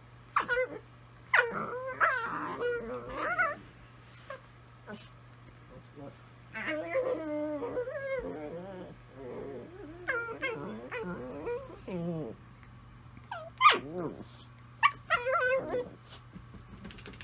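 Two Italian Greyhounds singing to each other: wavering, whining howls that rise and fall in pitch. They come in three bouts, with a short pause about four seconds in.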